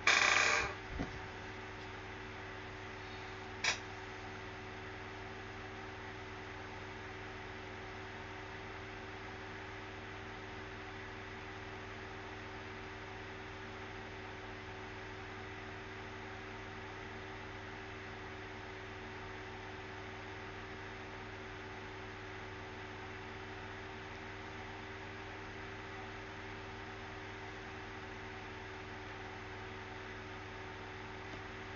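Steady background hum, a low drone with a few fixed tones like a fan or electrical equipment. A short loud rush of noise comes at the very start, then a soft thud about a second in, and a single sharp click a little over three and a half seconds in.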